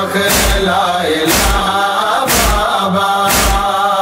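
A noha lament chanted by a chorus of men's voices over a heavy, steady beat about once a second, the rhythm of matam chest-beating.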